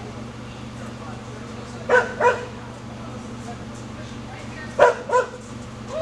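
A dog barking in two quick pairs, about a third of a second between the barks of each pair: one pair about two seconds in and another near five seconds. A steady low hum runs underneath.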